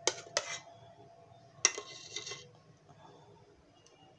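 Metal ladle knocking and scraping against an enamel pot while scooping thick milk pudding: two quick clinks at the start, then a sharper knock with a short scrape about one and a half seconds in.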